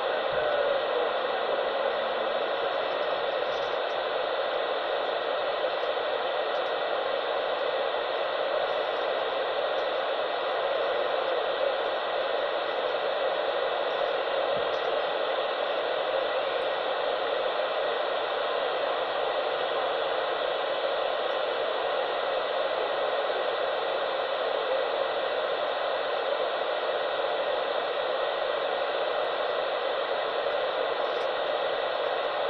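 A steady, even rushing hiss that does not change.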